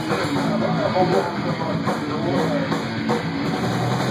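Live rock band playing a song, with electric guitar and drum kit.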